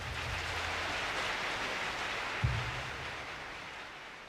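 Audience applauding, the clapping slowly fading away, with a low note from the band dying out in the first second and a single low thump about two and a half seconds in.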